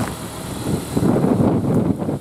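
Volkswagen Golf GTI's 2.0 TSI turbocharged four-cylinder engine idling, with a rough rumbling noise swelling about halfway through.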